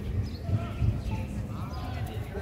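Indistinct voices of people around, over a run of low, irregular thuds.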